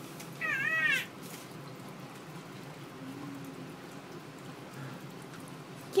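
A baby's short, high-pitched warbling squeal, about half a second in.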